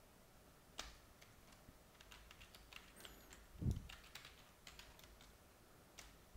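Faint typing on a computer keyboard: scattered keystrokes over several seconds, with one dull low thump about three and a half seconds in.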